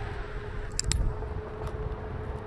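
Onewheel electric board rolling along with a steady thin motor whine over a low rumble of wheel and wind. Two sharp metallic clicks come just before a second in, and a fainter one follows near the end.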